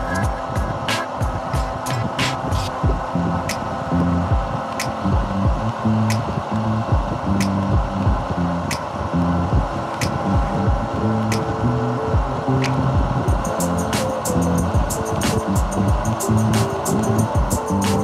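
Background music with a steady, slow beat over a stepping bass line; quicker ticking percussion joins in about two-thirds of the way through.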